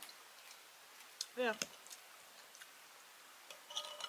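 Faint scattered clicks of cutlery on dishes during a meal, with a short ringing clink near the end.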